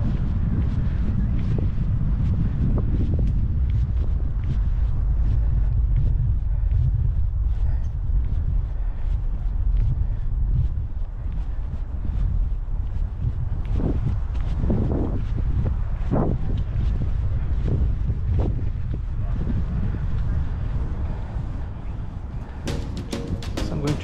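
Heavy wind rumble buffeting a GoPro Hero 10's microphone as it is carried at a run, with faint footfalls. Music comes in near the end.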